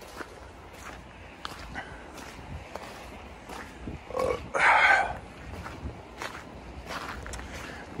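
Footsteps on wet gravel, a faint crunch about every half second, with a short breathy vocal sound from the walker about halfway through.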